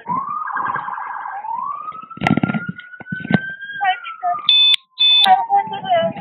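Police car siren wailing: one slow rise in pitch over about three seconds, then a slow fall. Two short radio beeps sound about three quarters of the way in, and voices talk over the siren.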